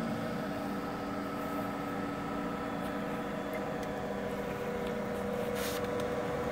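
Pool pump motor running with a steady hum made of several fixed tones, the filtration system circulating water. A short rustling noise comes near the end.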